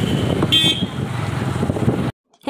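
Road traffic on a town street: vehicle engines running as an auto-rickshaw passes close by, with a short, high horn toot about half a second in.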